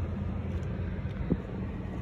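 Heavy rain falling on a car's roof and windshield, heard from inside the cabin as a steady hiss with a low rumble underneath.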